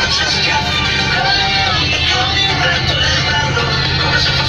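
Coach bus engine droning steadily in the passenger cabin, with voices and music over it.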